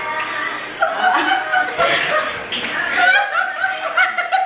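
Several women laughing together, bursts of chuckling and giggling that start about a second in.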